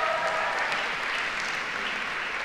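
Audience applauding, a steady clapping that eases slightly toward the end.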